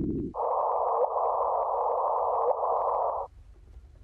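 Electronic noise from a sound collage. A low rushing noise cuts off, and about a third of a second in a higher hiss starts abruptly, with a faint steady tone beneath it and two short chirps. The hiss stops sharply a little after three seconds.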